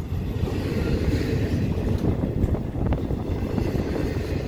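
Double-stack container freight train rolling past close by: a steady low rumble of the cars' wheels on the rails, with a single sharp click about three seconds in.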